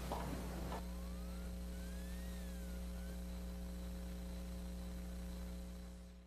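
Steady electrical mains hum in the recording, with a few faint high tones gliding up and down in the middle; it fades out at the very end.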